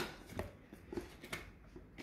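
Small pocket knife slitting the seal on a cardboard phone box: a few short, irregular scrapes and clicks of the blade against the card, the sharpest right at the start.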